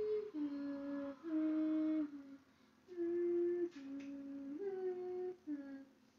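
A woman humming a song's melody in held notes that step up and down, in two phrases with a short break about two and a half seconds in, while she tries to recall the lyrics.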